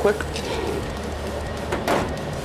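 A short clunk near the end as a chrome drum tom mount is set down on the metal top of a clothes dryer. A low steady hum runs underneath.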